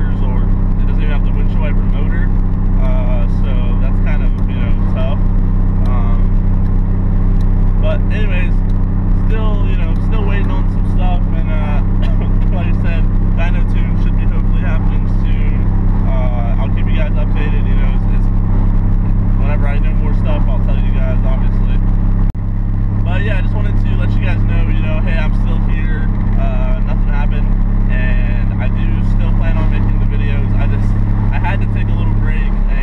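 Car engine and road noise heard from inside the cabin while driving: a steady low drone, with a short dip about two-thirds of the way through, after which it runs a little louder.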